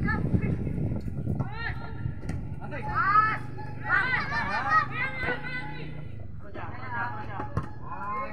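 Several voices shouting and calling out at once across an outdoor football pitch, loudest from about three to five seconds in, over a low rumble that is strongest in the first second or so.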